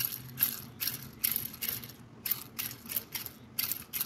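A Chinese-made double-row sealed bearing turned by hand in short strokes, giving a rough, gritty rattle about two to three times a second. The roughness comes from its pitted rolling elements after only about 60 km of use.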